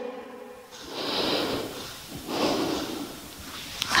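A woman breathing slowly and evenly while holding a yoga pose: two audible breaths, each about a second long.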